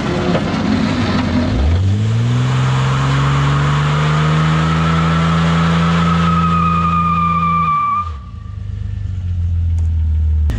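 Jeep Cherokee XJ engine revved hard and held at high revs while its tires spin on wet pavement in a burnout, with a high, thin tire squeal. About eight seconds in, the revs drop away quickly.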